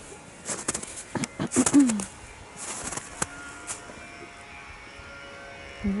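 Footsteps and camera handling, a run of irregular clicks and crunches in the first two seconds, then a faint steady hum for the rest.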